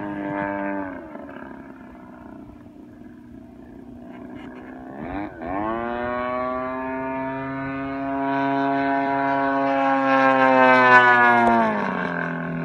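Radio-controlled model airplane in flight, its motor and propeller making a pitched drone. The drone falls in pitch and fades early on. About five seconds in it dips and then comes back up as a steady, louder drone that grows and then drops in pitch near the end as the plane passes.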